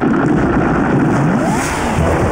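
Cartoon car engine sound effect, starting abruptly and revving loudly with its pitch rising and falling.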